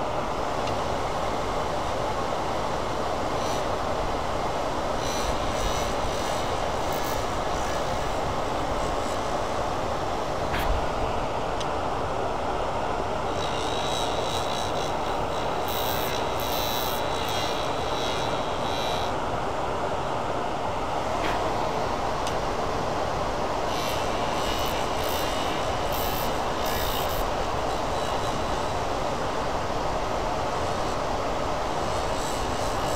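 Wood lathe running steadily while a carbide-tipped turning tool shaves a spinning resin and aluminum honeycomb pen blank, the cutting adding a higher, scratchy noise in three spells, about five, fourteen and twenty-four seconds in. A single sharp tick about ten and a half seconds in.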